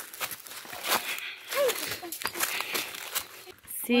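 Footsteps crunching over dry fallen leaves and dirt, an irregular run of crackles, with a brief voice sound about one and a half seconds in.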